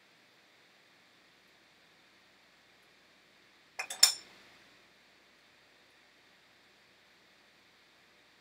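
A metal spoon clinking against a pan, a few sharp clinks in quick succession about four seconds in, with only faint room tone before and after.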